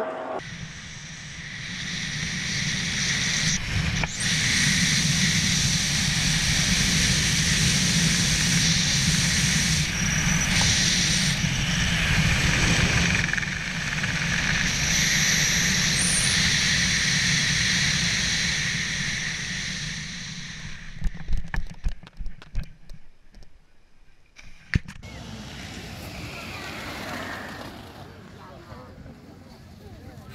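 Steady wind rushing over a helmet-mounted camera's microphone during a parachute descent over the landing field. About two-thirds of the way in it turns into irregular buffeting and knocks, then drops to a quieter rustle.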